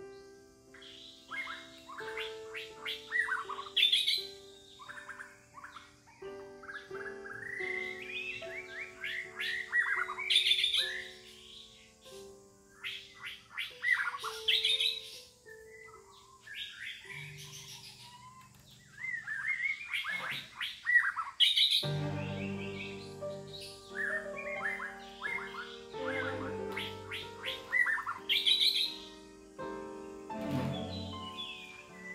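Birds chirping and calling, with many short rising and falling chirps, over soft music of slow held notes; deeper notes join about two-thirds of the way through.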